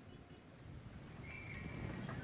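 Faint open-air background ambience just after a brass band has stopped playing. A brief, faint high ringing tone sounds about a second and a half in.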